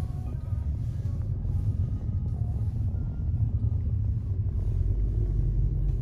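Steady low rumble of a Honda car's engine and tyres heard from inside the cabin as it rolls slowly.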